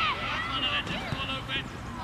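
Children's voices calling and shouting, several at once and high-pitched, with no clear words.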